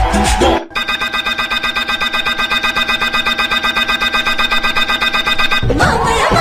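Sound effects and music from an animated clip: a music snippet cuts off about half a second in. A steady, rapidly pulsing tone at one fixed pitch follows for about five seconds, and a new piece of music starts near the end.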